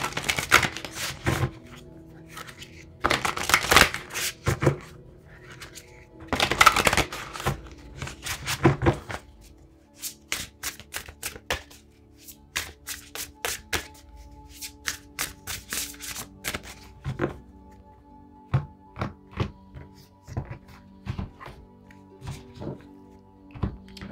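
A Shaman's Dream Oracle card deck being shuffled in three brisk bursts over the first seven seconds, then a long run of light clicks and taps as cards are handled. Soft background music with sustained tones plays underneath.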